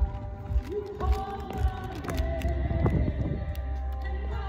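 A worship band playing a song, with a singer holding long notes over a regular beat.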